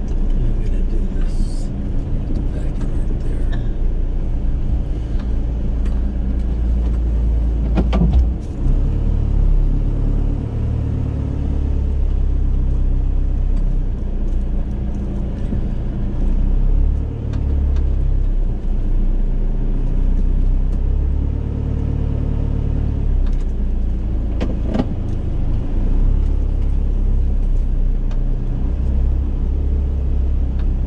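Van engine and tyres heard from inside the cab while rolling slowly over a dirt lot: a steady low rumble, with a sharp knock about eight seconds in and another near twenty-five seconds.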